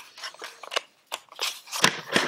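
Short plastic clicks and crackles as a flat HDMI cable is handled between the fingers, with the sharpest click near the end.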